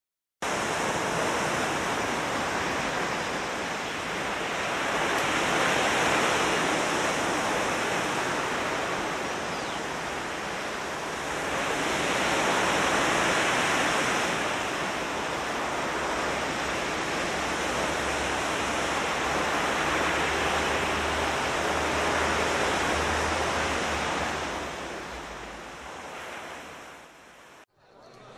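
Ocean surf sound effect: a dense wash of waves that swells and ebbs in slow surges several seconds apart, with a deep rumble underneath in the middle stretch. It fades down near the end and cuts off.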